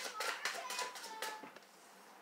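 Tarot cards being shuffled by hand: a quick run of light papery clicks that stops about one and a half seconds in.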